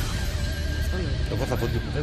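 TV programme's theme music for its opening title sequence, with a heavy steady bass. In the second half, a wavering, voice-like sound glides up and down over the music.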